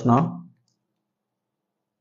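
A man's voice finishing a spoken phrase in the first half-second, then cutting off abruptly into silence.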